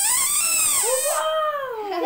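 A child blowing a small plastic toy whistle: one long wailing tone with loud breath hiss, which drops lower and slides downward after about a second as the hiss stops.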